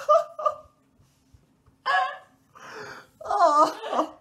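A young man laughing in short breathy bursts, a pause of about a second, then a longer wavering laugh near the end.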